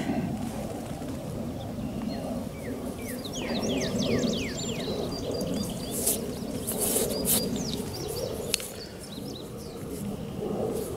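Small birds chirping, with a run of quick falling chirps about three to four seconds in and scattered calls after, over a steady low outdoor noise.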